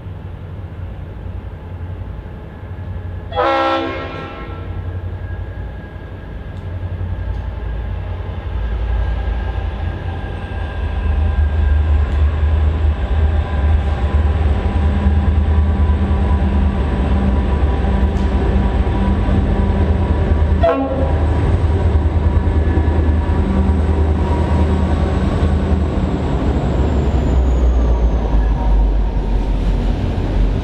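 Two QUBE G-class diesel-electric locomotives approach hauling a container freight train: a short horn blast about three seconds in, then the engines' low rumble builds and stays loud as the locomotives and container wagons pass close by.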